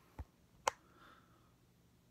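Two short clicks about half a second apart, the first duller and the second sharper, from the control button of a dimmable light being pressed to step its brightness up.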